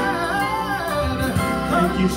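Gospel singing: a voice carries a melody whose pitch wavers and bends, over sustained backing chords.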